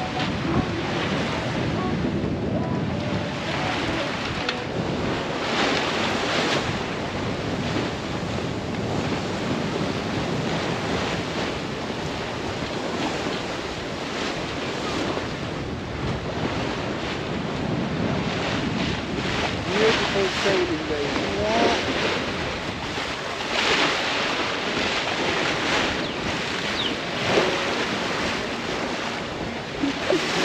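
Water rushing along a sailboat's hull and bow wave while under sail, with wind buffeting the microphone. The rush swells and eases in repeated surges.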